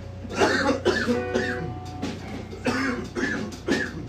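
Several men laughing in short bursts, with a brief held musical note about a second in and a steady low hum underneath.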